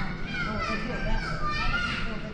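Children playing, their high voices calling out and chattering in several overlapping shouts.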